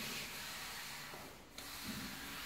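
Sliding fitness discs under the feet rubbing across a wooden floor as the legs are pushed back from a tuck into a plank.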